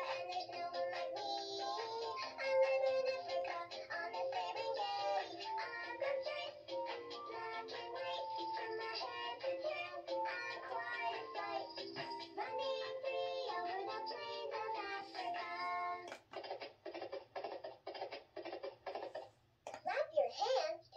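VTech Lights and Stripes Zebra plush toy playing one of its sing-along songs from its tummy speaker: a synthesized voice sings a bouncy children's tune. About sixteen seconds in the singing stops, and only a quick, steady beat carries on.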